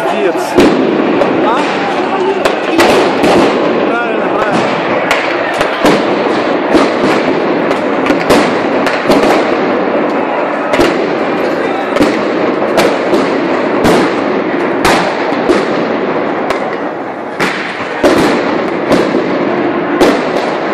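Many sharp explosive bangs of pyrotechnics, firecrackers or stun grenades, going off at irregular intervals about once a second, the loudest near the start and close to the end. Beneath them runs the loud, steady din of a large crowd.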